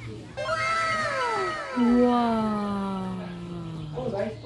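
Several voices, children's and a man's, calling out long drawn "ooh" sounds in a rock tunnel. The calls overlap and each slides down in pitch; the deep man's call comes in partway through and is held, sinking slowly, until the end.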